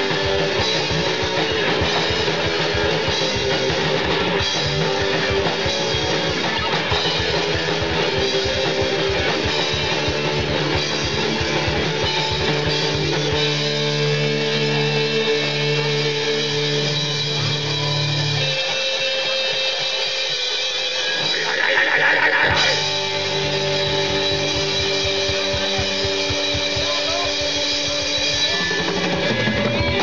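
Hardcore punk band playing live: distorted electric guitars, bass guitar and a drum kit, loud and driving. About 18 seconds in the low end drops away for a few seconds, then the full band comes back in about 23 seconds in.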